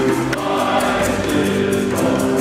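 Men's choir singing held chords, with gourd shakers keeping a steady beat of about four strokes a second and a hand drum underneath.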